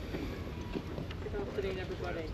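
Wind buffeting the microphone as a steady low rumble, with indistinct talk from people close by in the second half.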